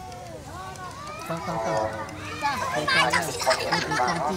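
Children's voices talking and calling out, quieter at first and louder and higher from about a second and a half in.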